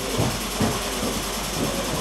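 Pointe shoe being worked by hand on a clamped last, giving a few dull knocks and handling noises over a steady low hum of workshop machinery.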